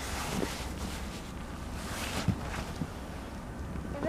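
Wind rumbling on the microphone, with the soft scraping of a plastic sled lid sliding over snow.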